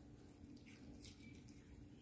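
Near silence with a few faint, short clicks of a small dog eating shredded chicken and egg off a plate.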